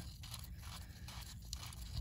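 Faint scraping and rustling of a rubber-gloved hand handling a bolt in an oily crankshaft flange.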